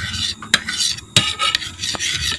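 A metal knife scraping and stirring aloe vera gel across a ceramic plate, with a few sharp clicks of the blade against the plate.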